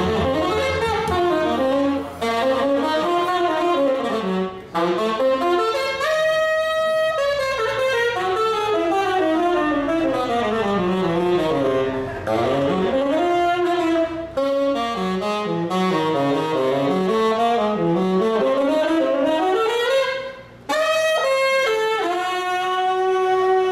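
Tenor saxophone soloing in a jazz quartet, with upright bass and drums behind it. It plays fast runs that climb and fall, holds one long note about six seconds in, and takes short breaths between phrases.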